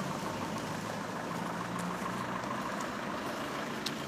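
A vehicle engine idling steadily under outdoor street noise.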